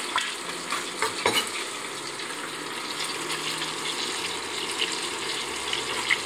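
Chicken carcass pieces sizzling as they sear in butter and olive oil in a pot, a steady frying hiss. A few sharp knocks of a chef's knife on a wooden cutting board come in the first second and a half.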